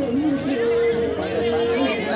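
Several people talking over one another, with one long steady note held through the middle.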